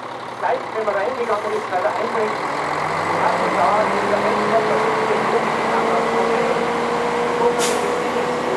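Large Schlüter Profi-Gigant tractor's engine running, its revs rising slowly from about three seconds in as it pulls away, with crowd chatter around it.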